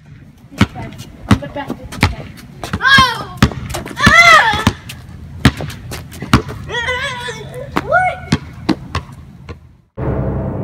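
A basketball being dribbled on a concrete driveway: about a dozen sharp bounces at uneven intervals, broken up by children's shouts.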